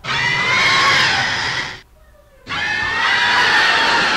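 A monster roar sound effect, played twice: two loud, high-pitched cries of under two seconds each, with a short gap between them. Each starts and cuts off abruptly.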